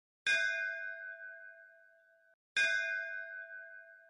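A metal bell struck twice, a little over two seconds apart, each strike ringing out and fading; the first ring stops abruptly just before the second strike.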